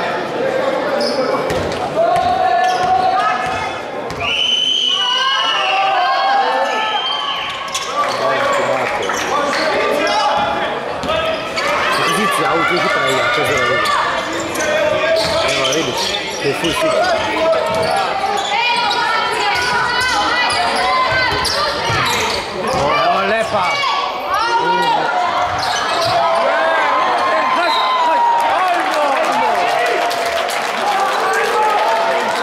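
Basketball bouncing on a hardwood gym floor during live play, with many short sharp strikes and shouting voices echoing around a large sports hall.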